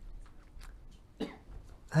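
A single short cough a little past halfway through, against quiet room tone.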